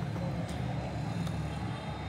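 Steady low background noise, a faint hum with hiss, and no distinct sound event.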